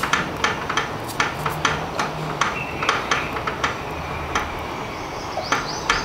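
Sharp, irregular clicks, a few a second, from a tubeless puncture-plug insertion tool forcing a repair strip into a scooter tyre, heard over a faint low hum.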